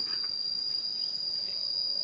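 Insects trilling in one steady, unbroken high-pitched tone.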